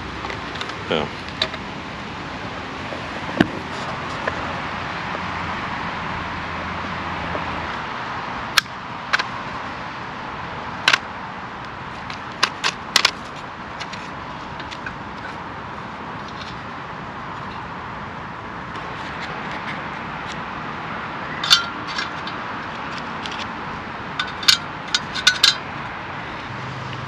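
A folding steel pocket stove being unpacked and unfolded: scattered sharp clicks and light metal clinks as its panels are opened out and the stove and fuel-tablet box are set down on a wooden table, with a burst of quick clicks near the end. Steady outdoor background noise underneath.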